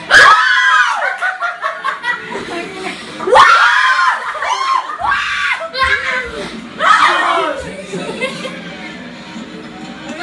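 Excited high-pitched screams and yells from people watching in a small room, in about four loud bursts: at the start, then about three and a half, five and seven seconds in. Television sound of the broadcast, music and arena crowd, plays underneath.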